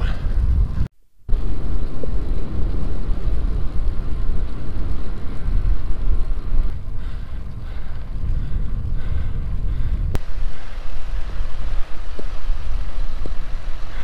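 Wind buffeting the microphone of a camera carried by a moving cyclist: a loud, steady low rumble, briefly cut off about a second in, with a single sharp click around ten seconds in.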